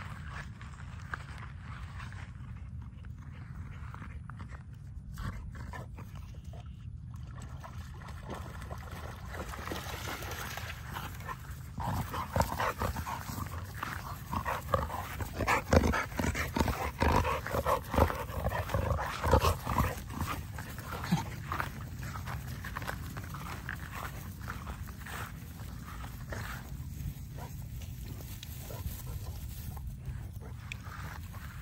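XL American bully puppies playing and tussling close by: a run of short dog sounds and scuffles through the grass, busiest for about ten seconds in the middle, over a steady low rumble.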